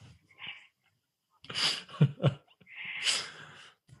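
A man laughing in several short, breathy bursts, the longest about three seconds in.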